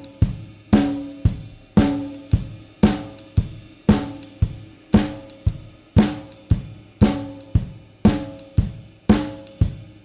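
Drum kit played in a jazz time feel with the snare and bass drum hit heavily, louder than the ride cymbal and hi-hat: the upside-down volume balance typical of beginner jazz drummers. Heavy strokes come about twice a second, each ringing out, and stop near the end.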